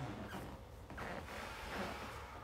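Faint sounds of a person moving: soft footsteps in socks and breathing hard after exertion.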